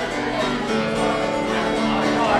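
Live acoustic bluegrass band playing an instrumental passage, with a mandolin picking over strummed acoustic guitars.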